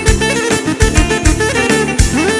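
Live Albanian folk instrumental band music: two clarinets lead the melody over a band with a steady, fast drum beat.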